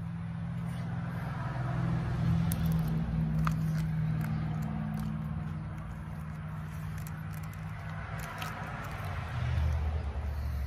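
A person chewing a mouthful of beef ravioli, with a spoon scraping and clicking in the MRE pouch, over a steady low hum.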